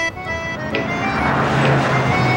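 Background music with steady held notes, joined about half a second in by the steady rush of road traffic passing on a highway below.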